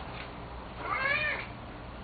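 A single short, high-pitched call about a second in, its pitch rising then falling.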